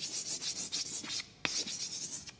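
Rough, hissy scraping noise in quick uneven strokes, with a sharp click about one and a half seconds in.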